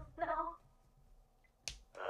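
A short line of anime dialogue in the first half-second, then quiet, then a single sharp click near the end.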